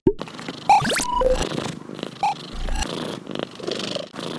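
A cat purring, overlaid with short cartoon sound effects: a quick rising whistle about a second in and a few brief pitched blips.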